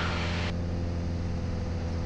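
Piper Cherokee 180's four-cylinder Lycoming engine and propeller droning steadily in cruise, heard inside the cabin, with the mixture set full rich for landing. The hiss above the drone drops away about half a second in.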